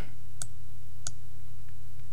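Computer mouse clicks, two sharp ones about half a second apart and a fainter one later, as the Activate button is clicked. A steady low hum runs underneath.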